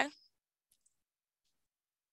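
The end of a spoken word, then near silence broken by three very faint, short clicks within the next second or so.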